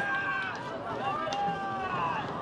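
Several people shouting long, drawn-out calls, one after another and partly overlapping.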